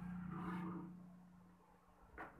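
A man's voice holding a low, steady hesitation hum between sentences, fading away after about a second and a half.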